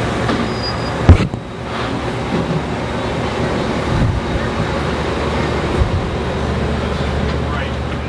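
A vehicle engine idling with a steady low hum. A single sharp knock about a second in is the loudest sound.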